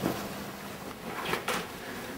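Quiet room with a few soft thumps and shuffles of a person getting up from a couch and walking across the floor, the thumps clustered about a second in.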